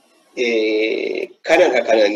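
Speech: after a short pause, a speaker holds one long, steady vowel-like hesitation sound for about a second, then carries on talking.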